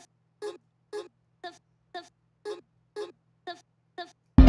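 Short vocal sample chop played on its own in a music production session, repeating in an even pulse about twice a second. A faint steady low hum sits underneath.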